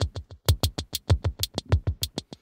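Elektron Model:Cycles drum machine playing a fast electronic beat through a delay pedal: short, evenly spaced hits, several a second, with low kick-drum hits that drop in pitch.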